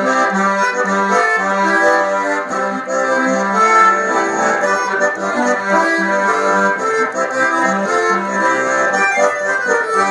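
Accordion playing an instrumental passage between sung verses of a gaúcho song, a melody over a regular bass-and-chord pattern.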